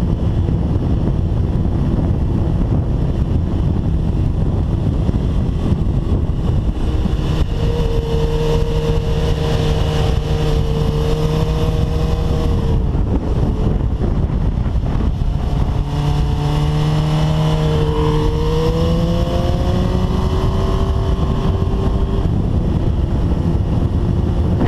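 Heavy wind rush on the onboard microphone of a 2005 Suzuki GSX-R1000 at speed, with the bike's inline-four engine note coming through twice, each time for about five or six seconds. The second time its pitch climbs near the end.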